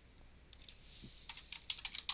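Computer keyboard being typed on: two key taps about half a second in, then a quick run of keystrokes in the second half as a short expression is entered.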